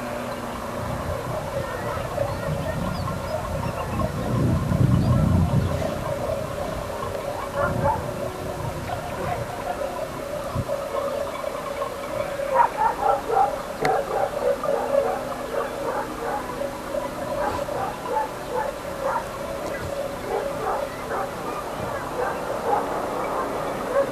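Animal calls over a steady outdoor background, busiest about twelve to fourteen seconds in, with a low rumble about four to six seconds in.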